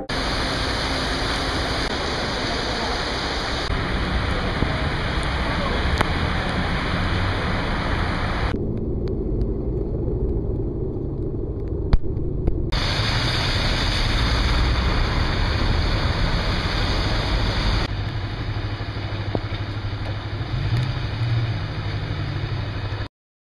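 Steady hiss of heavy rain and running water over a low rumble of city traffic on a waterlogged street. The sound changes abruptly several times between shots, and is duller for a few seconds in the middle.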